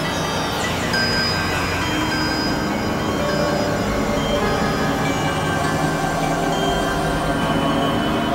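Experimental synthesizer drone music: a dense, steady mass of held tones over noise, with a cluster of falling glides about half a second in and thin high tones coming and going.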